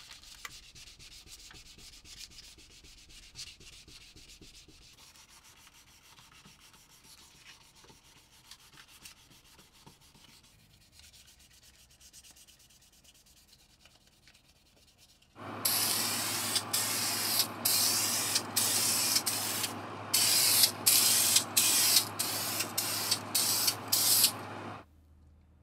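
Faint rubbing of small sheet-metal scale parts under a gloved hand for about fifteen seconds. Then a steady hum starts and the parts are spray-painted in a quick series of short hissing bursts, which are by far the loudest part.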